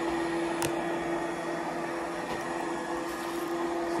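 Digital Essentials robotic vacuum cleaner running on carpet: a steady motor hum with a whine held at one pitch, and a single sharp click about half a second in.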